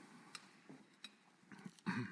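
Faint handling noise of a Bible at a pulpit microphone: a few light clicks and page rustles, then a louder rustle and knock near the end as the book is lifted.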